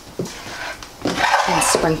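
Quiet room tone, then about a second in a short scrape and rustle of a spoon pushing diced ham mixture out of a nonstick skillet into a casserole dish.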